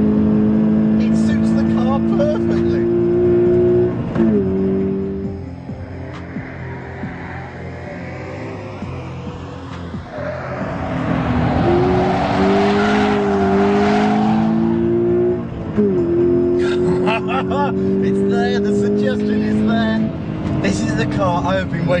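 Toyota GT86's naturally aspirated flat-four running hard at high revs, its note dropping sharply about four seconds in and again near fifteen seconds, at a gear change or lift. In the middle the tyres squeal for several seconds as the car slides sideways.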